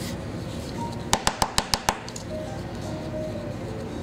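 Six quick, sharp taps in a row, about seven a second, over a steady background.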